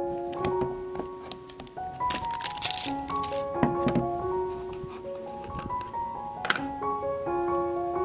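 Background music: a light, plinking melody of single notes on piano or mallet instruments. About two seconds in, plastic wrap crinkles and crackles, with scattered clicks, as scissors cut the shrink seal off a plastic margarine tub and it is peeled away.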